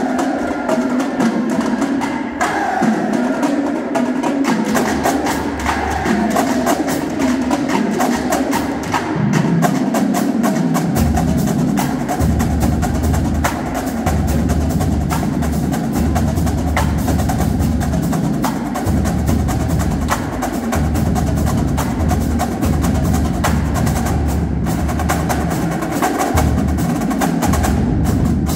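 High school marching drumline playing a cadence: snare drums with rapid strokes and rolls, and tenor drums. Bass drums come in strongly with a steady low pulse about eleven seconds in.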